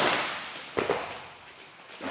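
Two sharp impact sound effects, one right at the start and a second just under a second in, each fading out in a ringing tail.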